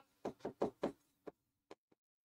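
Marker tip tapping and knocking on a hard writing board in a quick, uneven run of light clicks as handwriting is written. The clicks thin out in the second half.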